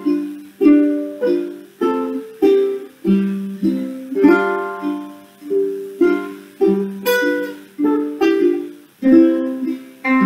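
A ukulele and a small acoustic guitar strumming chords together in an instrumental break, with no singing. A steady rhythm of chord strokes, each ringing out before the next.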